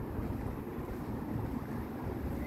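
Wind on the microphone: a low, uneven rumble over faint outdoor background noise.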